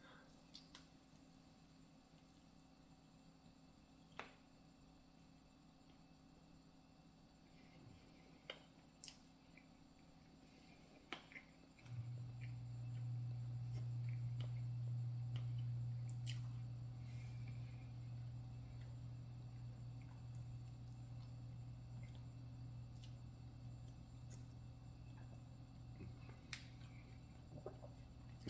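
Quiet eating of fried chicken with a few faint clicks and mouth sounds. About twelve seconds in, a steady low hum starts abruptly and carries on, louder than the eating sounds.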